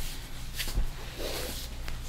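A few soft taps of a rubber reflex hammer struck against the leg during a tendon-reflex test. The loudest is a dull thump just under a second in.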